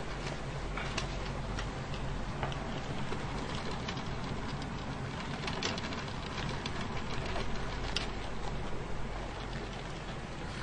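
Handling noise from a DVD box set and its discs held close to the microphone: soft rustling with a few scattered light clicks, over a steady low hum.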